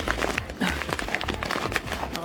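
Plastic bags of rice crinkling and rustling as they are handled and pushed back on a shelf, with irregular small crackles.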